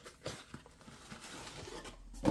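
Faint handling of a cardboard pie box: soft rustles and a few small clicks as the box is worked open and the pie in its foil tray is handled.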